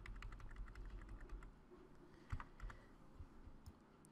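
Faint, quick taps on a computer keyboard, the arrow keys pressed over and over to nudge a shape along. The run thins out after about a second and a half into a few scattered clicks and low knocks.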